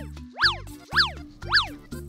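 Pac-Man-style electronic 'wakka' chomp sound effect: four quick up-and-down pitch sweeps about half a second apart, over background music with a low bass line.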